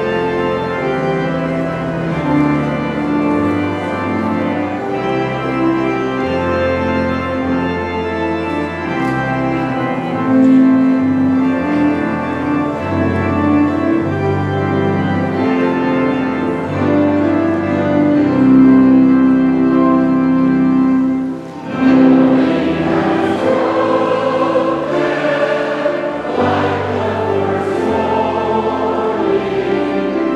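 A keyboard instrument plays held, sustained chords as a hymn introduction. After a brief pause about two-thirds of the way through, a church congregation starts singing a hymn with the accompaniment.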